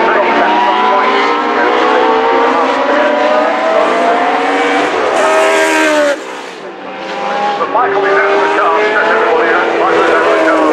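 Several historic Formula One cars passing at high revs, their engine notes overlapping and falling in pitch as each goes by. A short lull about six seconds in, then the next cars' engines build again.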